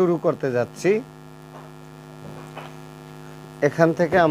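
Steady electrical mains hum, a low buzz with a ladder of even overtones, running under a man's speech in the first second and again near the end.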